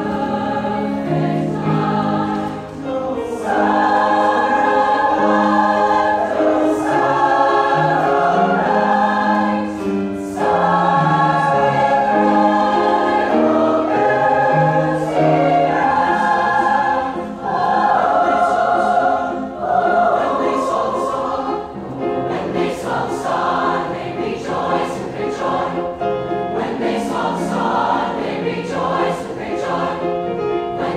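Large mixed choir singing held chords in long phrases, with a piano accompanying; the phrases break off briefly every few seconds, and near the end the singing turns to shorter, more detached notes.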